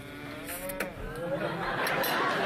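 A long, drawn-out, wavering "mmm" of someone tasting the spaghetti. From about a second and a half in, studio audience laughter swells.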